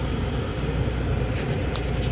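Diesel locomotives idling, a steady low rumble, with a few faint ticks near the end.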